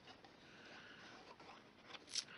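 Very faint rubbing and scraping of a liquid glue bottle's applicator tip being drawn over cardstock, barely above room tone.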